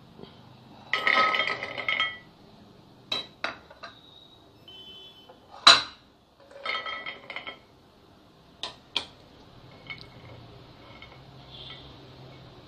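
Crisp fried seedai balls tipped from a glass plate into a ceramic dish: two short spells of rattling and clinking, about a second in and again past the middle, with sharp single knocks of plate on dish between them, the loudest about six seconds in. A few lighter clicks follow as the balls are touched and settle.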